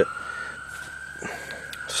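A siren wailing faintly: one long tone that crests in pitch and slowly falls, with a few faint clicks.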